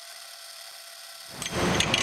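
A thin hiss with no low end for about the first second and a half, then the ambient noise of a station hall fades in much louder, with a few light clinks.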